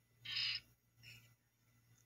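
Ghost box radio sweep giving a short burst of hissy, squawking static about a quarter second in, then a fainter blip just after a second.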